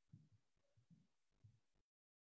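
Near silence, with a few faint, low, irregular thuds passed through a video call's noise suppression before it cuts to dead silence.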